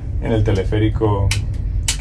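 A man speaking Spanish to the camera over a steady low rumble.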